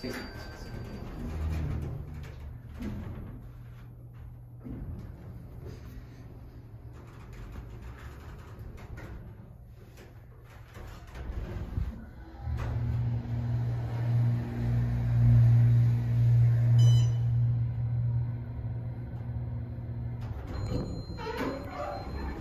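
Otis hydraulic elevator in motion. About halfway through, a strong steady low hum starts and runs for several seconds, then eases off. A short high electronic tone sounds at the start and another near the end.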